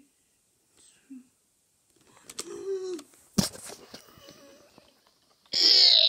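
A child's wordless vocal sounds: a short wavering sound, a sharp click about three and a half seconds in, then a loud, harsh growl near the end.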